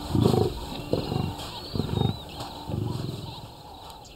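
Lions roaring: a run of low, pulsing grunt calls, one every second or less, trailing off near the end, with faint high bird chirps above.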